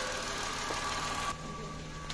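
Mitsubishi Mirage G4's three-cylinder engine idling steadily after a repair to the number 3 injector connector, now running smoothly without the misfire. About a second and a half in, the hiss above the engine note drops away suddenly and the sound gets quieter.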